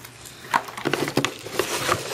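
Plastic wrapping and packing peanuts rustling and crinkling as hands dig a wrapped item out of a cardboard box. The rustling starts about half a second in, with a few sharper crackles.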